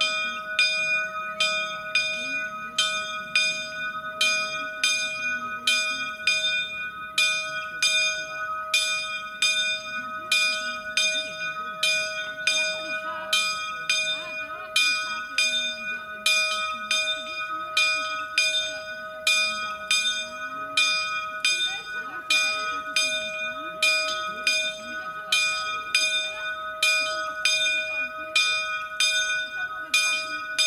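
A single church bell tuned to E-flat, cast by Fratelli Barigozzi of Milan, swung full circle in the Italian 'a distesa' manner. Its clapper strikes a little more than once a second, and a steady ringing hum carries between the strokes. This is the ringing that calls people to the evening rosary.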